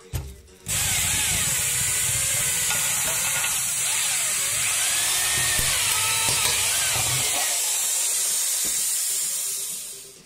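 A corded electric drill starts about a second in and runs under load with a wavering whine, turning a screw-driven hole punch through the wall of a white enclosure. Near the end the low rumble drops away and the drill winds down.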